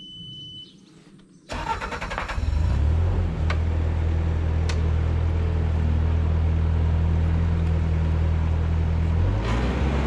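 Bobcat skid steer's diesel engine starting: after a short beep, it cranks about a second and a half in, catches and settles into a steady idle. The engine note changes near the end.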